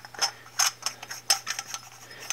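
Threaded aluminum saber hilt parts, a slanted blade holder and an MHS hilt section, being screwed together by hand. The threads and the metal handling give a run of small, irregular metallic clicks, several a second.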